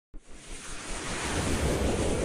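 Rushing whoosh sound effect of a TV channel's animated logo intro, starting out of silence and swelling steadily louder, with a low rumble underneath.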